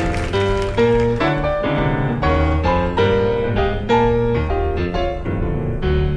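Jazz on acoustic piano, a run of chords and single notes changing about every half second over steady low notes.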